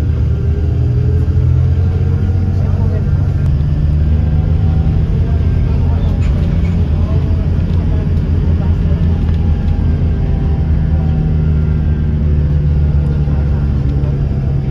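Steady low drone of a bus's engine and road noise heard from inside the cabin, with faint, indistinct voices in the background.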